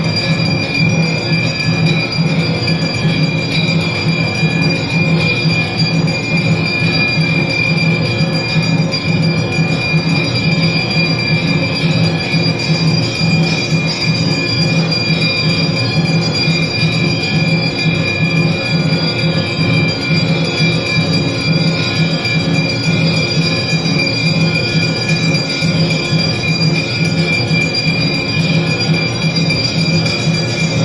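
Temple bells ringing continuously and loudly, a metallic clangour of many overlapping ringing tones over a fast low beat, as during an aarti.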